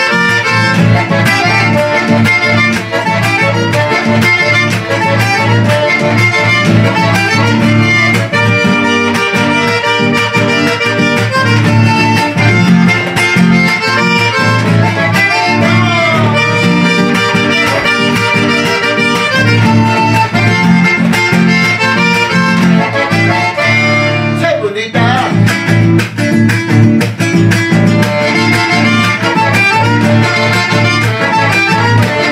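Instrumental chacarera played on a Hohner button accordion and a strummed classical guitar, in a steady, lively rhythm, with a short break in the music near the end.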